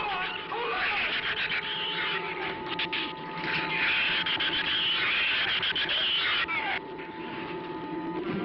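Giant-shrew creature sound effects: a dense, high-pitched mass of squealing and chattering over a held note of the film score. The squealing thins out about three-quarters of the way through.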